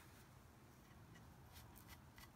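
Near silence, with faint scratchy rubbing of a wipe across chalk-painted wood, a few light strokes in the second half, wiping off excess black chalk paste.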